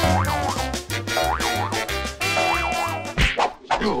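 Upbeat children's background music with a steady, repeating bass beat, overlaid with several short rising-and-falling pitch swoops like cartoon sound effects; the music thins out briefly a little after three seconds in.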